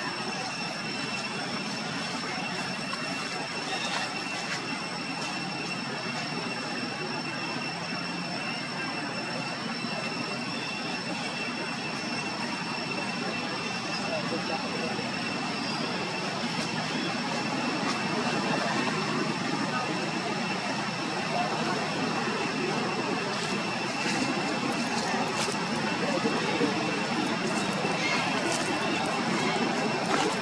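Steady background noise with indistinct voices mixed in, and a thin continuous high-pitched tone throughout; it grows slightly louder past the middle.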